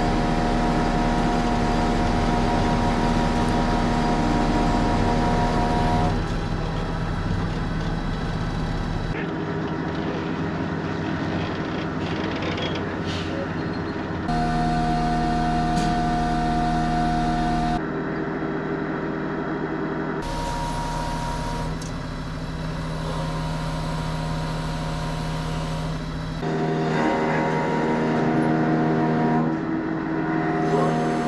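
Engine of a truck-mounted crane running steadily while it lifts a crawler tractor and lowers it onto a truck. Its pitch and loudness jump several times where the footage is cut together.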